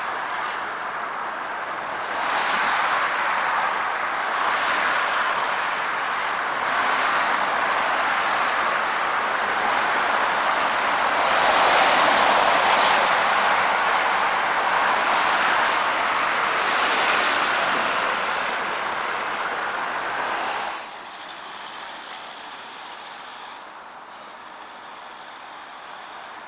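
Road traffic on a multi-lane road: tyre and engine noise of passing cars and trucks, swelling and fading as vehicles go by, with a short high hiss near the middle. About three-quarters of the way through it drops to a quieter, steady traffic hum.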